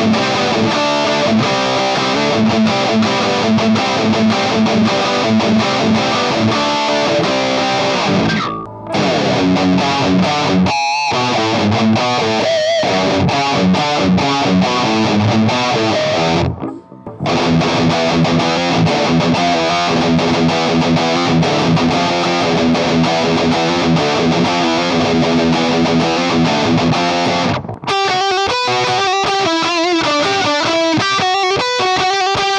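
Electric guitar played through a Danelectro FAB Metal distortion pedal and a computer cabinet simulator, playing distorted metal riffs. The playing breaks off briefly about 9, 17 and 28 seconds in.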